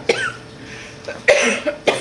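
A man coughing: one cough at the start, then after a brief quieter pause, a harder cough about a second and a quarter in.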